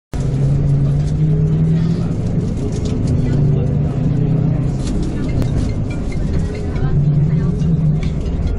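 Tour coach engine running and road noise heard from inside the coach as it moves off, with indistinct voices over it.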